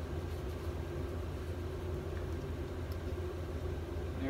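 Steady low machine hum with no other sound standing out.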